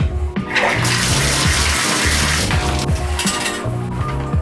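Shower water running and spraying. It rises about half a second in, is strongest for about two seconds, then eases off, over background music.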